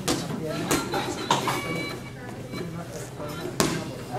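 Indistinct voices of a group of people talking in a hall, broken by several sharp knocks, the loudest just before the end.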